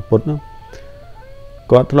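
A man speaking, with a pause of about a second in which only faint background music with a few held notes is heard before his speech resumes near the end.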